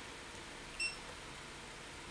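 A single short, high electronic beep a little under a second in, over faint steady room hiss.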